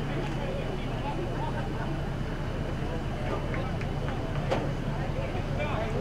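Open-air soccer field ambience: a steady low hum, faint distant shouts from players, and one sharp knock about four and a half seconds in.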